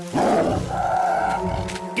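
A cartoon tiger roaring once, a rough roar lasting about a second and a half, over held music chords.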